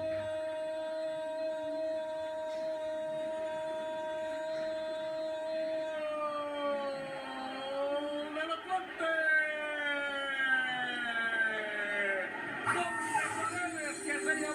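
A Spanish-language football commentator's drawn-out goal cry, "Gooool", held on one long steady note for about seven seconds, then sliding up and down in pitch for several more seconds. It is heard through a television's speaker.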